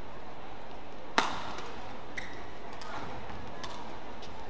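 Badminton racket strokes on a shuttlecock during a rally. One sharp, loud hit comes about a second in, followed by several fainter clicks, over a steady arena crowd murmur.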